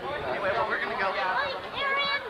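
Indistinct chatter of people's voices, speech with no clear words.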